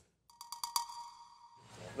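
A brief chime-like sound effect: a quick run of clicks with a ringing tone that fades over about a second. Low room noise follows.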